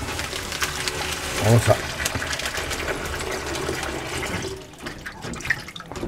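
Tap water running in a steady stream into a plastic colander in a stainless steel sink, stopping about four and a half seconds in.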